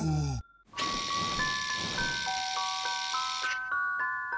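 An ice-cream-van chime tune: single bell-like notes stepping up and down over a steady hiss that stops about three and a half seconds in. Just before the tune, a falling tone cuts off.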